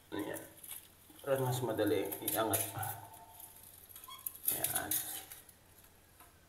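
Utility-knife blade scraping and scratching along the sealant bead at the base of a ceramic toilet on floor tile, in short strokes, to cut the toilet free. A man's voice talks in between.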